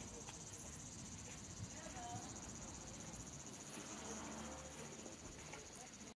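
Insects trilling: a steady, high-pitched buzz with a fast, even pulse that holds unbroken, over faint outdoor background.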